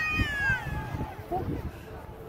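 A child's high-pitched, drawn-out squeal that falls in pitch and breaks off about half a second in, followed by fainter voices.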